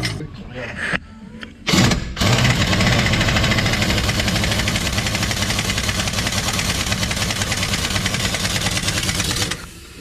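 Pneumatic impact wrench on a long extension, hammering as it torques the nut of a Hendrickson trailer suspension pivot bolt: a short burst about two seconds in, then steady rapid hammering for about seven seconds that stops shortly before the end. It is loud.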